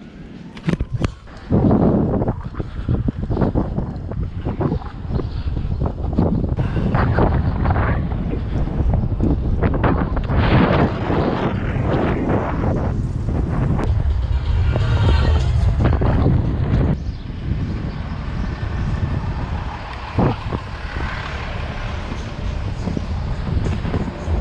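Wind buffeting the camera microphone in uneven gusts while riding an electric moped through city traffic, with passing vehicles underneath.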